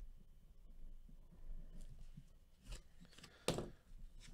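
Quiet handling of trading cards and card packs on a table, with two short rustling noises late on: a soft one a little before three seconds and a louder one about half a second later.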